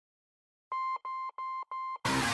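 Four short electronic beeps at one steady pitch, evenly spaced about a third of a second apart, starting after a moment of silence.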